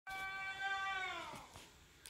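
A toddler's long, high-pitched squeal, held steady for about a second and then sliding down in pitch as it fades.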